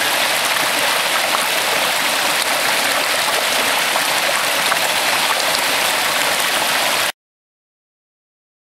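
Shallow urban creek rushing and splashing over rocks and a low cascade, a steady rush that cuts off suddenly about seven seconds in.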